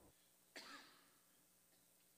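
Near silence broken by a single short cough about half a second in.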